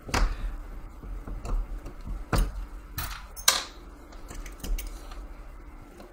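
Irregular clicks and taps of a screwdriver on the metal screw terminals of a small control transformer as the primary terminal screws are loosened, the sharpest clicks about two and a half and three and a half seconds in.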